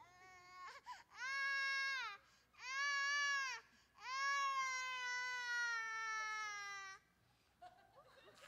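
High-pitched crying: three drawn-out wails, the first two about a second each and the third about three seconds, slowly falling in pitch.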